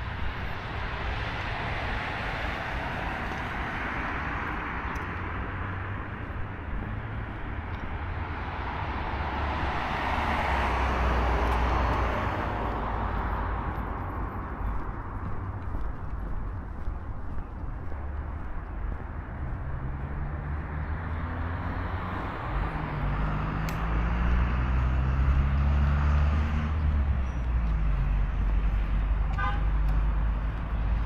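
Road traffic on a wide city avenue: cars passing with a rising and falling rush of tyre and engine noise, loudest about ten to twelve seconds in. From about twenty seconds a vehicle's engine climbs in pitch in steps as it accelerates, then drops away near the end.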